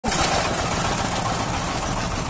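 Heavy diesel engine running steadily, a low even rumble.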